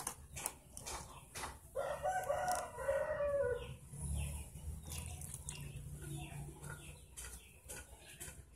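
A rooster crows once, a call of about two seconds that falls at the end, over scattered light clicks of a metal spoon against a plastic tub and cup.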